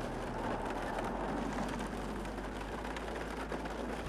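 Polestar 2 electric car driving on a test track: a steady rushing of tyre and wind noise.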